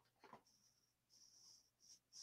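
Near silence: faint room tone with a few very soft short hisses and one soft click.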